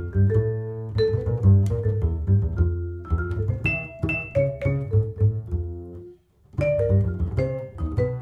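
Jazz duo of vibraphone and pizzicato double bass: struck vibraphone notes ring over a walking plucked bass line. Both drop out for a moment about six seconds in, then come back together.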